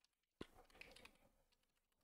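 A few faint computer keyboard keystrokes, the first a sharper click about half a second in, as code is deleted in a text editor.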